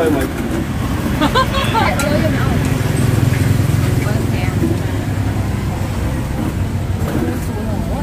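Steady low rumble of road traffic, swelling around three to four seconds in, under voices talking at the table.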